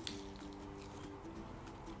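Faint chewing as two people bite into and chew pieces of Japanese fried chicken (karaage), with a short click at the very start as the bite is taken, over faint steady background tones.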